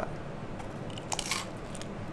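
Biting into a slice of pizza: the crust crunches, with a few crisp cracks a little after a second in.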